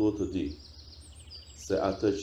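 A man speaking Albanian, with small birds chirping behind his voice. Quick high chirps and trills are heard most clearly in the pause in the middle.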